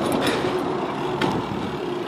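Steady noise of motor traffic on a city street, with a constant low hum running under it.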